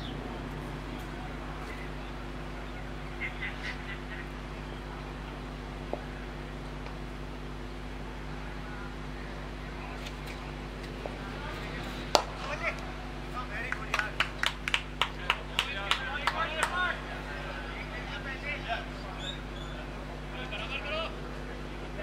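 Cricket bat striking the ball with a single sharp crack about halfway through, followed a couple of seconds later by a few seconds of quick hand claps and shouts from players and onlookers.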